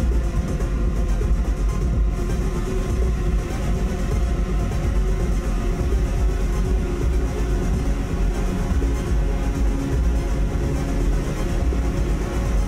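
Live electronic noise music: a dense, unbroken drone with heavy sub-bass rumble and many sustained tones layered above it, with no beat.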